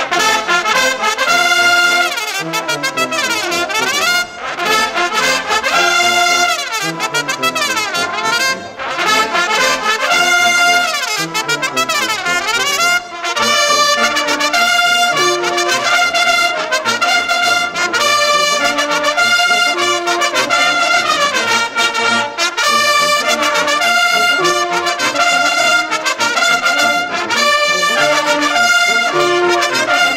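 Bersaglieri brass fanfare of trumpets and lower brass horns playing a lively military march. The music is loud and continuous, with brief breaths between phrases.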